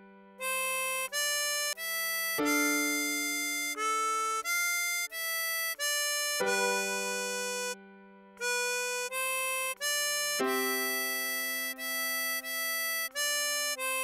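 Harmonica playing a song melody one note at a time, over piano chords struck about every four seconds, with a brief pause in the melody about eight seconds in.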